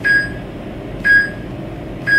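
Workout countdown timer beeping: three short, high electronic beeps about a second apart, marking the last seconds of a rest interval, over a steady background hiss.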